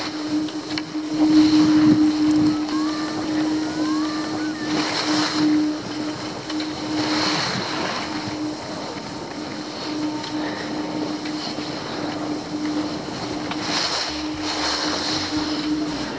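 Skis sliding and scraping over packed snow, with wind rushing over the microphone. The hiss swells in several surges as the skier turns, over a steady low hum.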